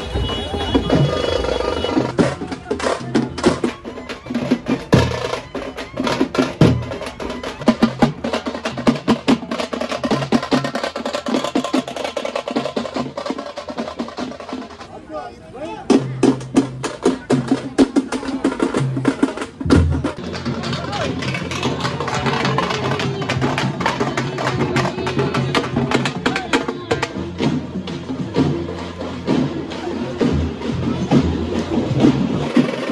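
Rapid, busy drumming with a crowd's voices underneath; the drumming drops away briefly about halfway through, then picks up again.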